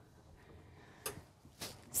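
Quiet room with two faint clicks, one a little after a second in and another about half a second later.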